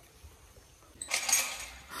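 Brief metallic rattling and jingling of a chain-link kennel panel being moved, starting about halfway through.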